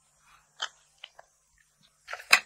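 Small handling sounds of makeup containers as tinted moisturiser and foundation are put on the back of a hand to be mixed: one sharp click a little over half a second in, then two fainter ticks about a second in.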